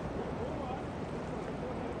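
Steady rush of river water pouring over a whitewater wave, with faint voices in the background.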